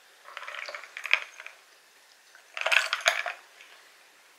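Two bursts of close-miked crackling and clinking: crunchy chewing, then ice cubes clinking in a glass of iced soda as it is picked up.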